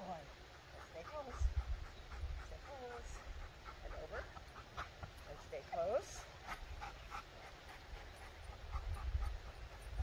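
A Golden Retriever's soft vocal sounds and panting mixed with a low human voice, heard as a handful of short rising-and-falling calls, over intermittent wind rumble on the microphone.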